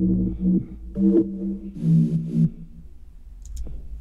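Bass rhythm part of a minimal tech house track played back: three short pitched bass-synth phrases in the first two and a half seconds, then a quieter tail. It is the part that sets up the call and response with the other synths in the breakdown.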